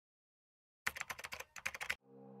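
Typing sound effect: rapid keyboard keystroke clicks in two quick runs with a brief pause between, starting about a second in.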